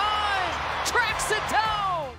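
A basketball TV commentator's excited call of a chase-down block, over background music.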